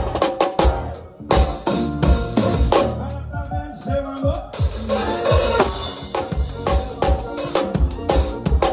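Drum kit played live with a forró band: kick drum and snare keeping the beat under the band's pitched parts, with cymbal crashes. There is a short break just before a second in, and a dense run of hits near the end.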